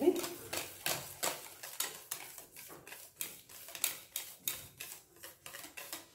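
Wire whisk beating a thick custard in a stainless steel pan, its wires clicking and scraping against the pan about two or three times a second, as lumps are whisked out of the thickening cream.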